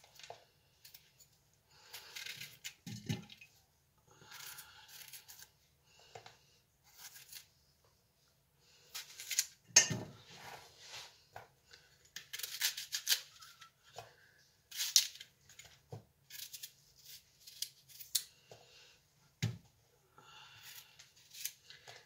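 Kitchen knife cutting through fresh apples held in the hand: irregular crisp cuts and scrapes as bruised spots are trimmed and the apples divided into pieces. A few soft knocks come between the cuts, the loudest about ten seconds in.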